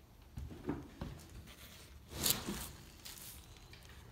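A front door being unlatched and pulled open: a few clicks and knocks in the first second, then a brief scrape about two seconds in, the loudest sound, and a smaller one a second later.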